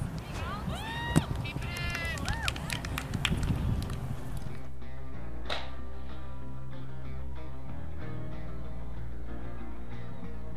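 Outdoor field sound with wind rumble on the microphone and several voices shouting, cheering a discus throw. About four and a half seconds in, this cuts to background music with guitar.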